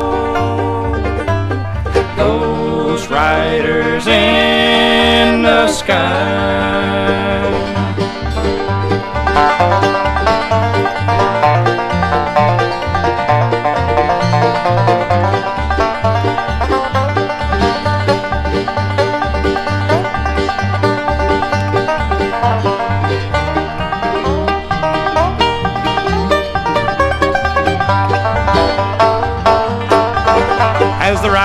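Bluegrass band playing: long, sliding notes for the first few seconds, then a fast five-string banjo break over a steady, stepping bass line.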